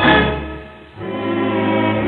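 1940s dance orchestra playing an instrumental passage. A held chord dies away over the first second, then a new sustained chord with a low bass note comes in and holds.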